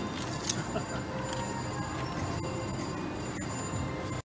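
Casino floor background din: a steady mix of slot machines' electronic jingles and tones with faint distant voices.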